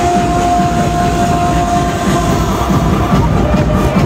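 Loud live 90s dance music played over a concert PA, heard from the crowd, with a long held high note through about the first half.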